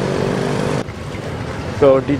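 A motorcycle engine running close by, cut off suddenly a little under a second in; quieter street noise follows, and a voice starts speaking near the end.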